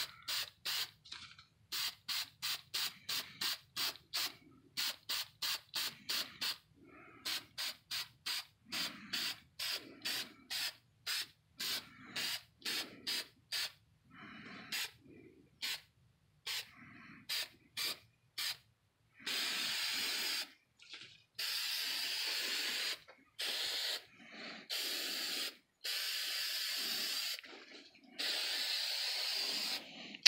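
Aerosol can of clear acrylic gloss sealer spraying onto EVA foam armor. It starts with rapid short puffs, about three a second, and from about two-thirds of the way in gives several longer sprays of a second or two each.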